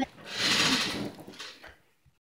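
A child's breathy, hissing vocal sound lasting about a second, fading out, followed by two small knocks near the end.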